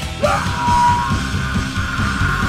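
Live rock band playing loud, with drums and bass thick underneath. About a quarter second in, a high note slides up and is held, from a screamed vocal or a guitar.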